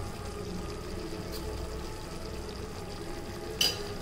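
Gravy simmering quietly in an iron kadai, a faint steady bubbling sizzle, with one short click about three and a half seconds in.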